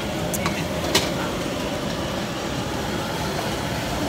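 Steady background din of a busy street market, with a couple of short crackles in the first second.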